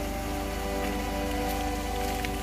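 Steady rain, heard as a constant even hiss, with soft background music of held notes playing over it.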